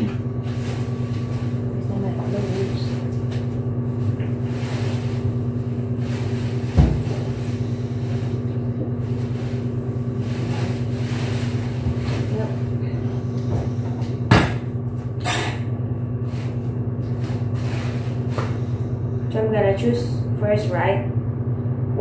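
Steady electrical hum of laundromat washers and dryers, with a sharp knock about seven seconds in and another at about fourteen seconds as laundry is loaded into a front-loading washer.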